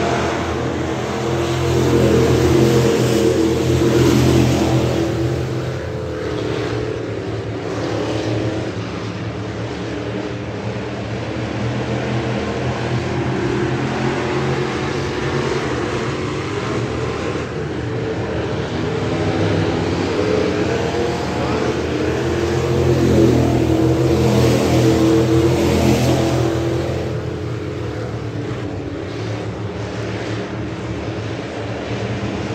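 A pack of Thunder Bomber dirt-track stock cars racing on a clay oval, their engines running at full throttle. The sound swells loudest as the cars pass close, about two to five seconds in and again around twenty-three to twenty-six seconds in.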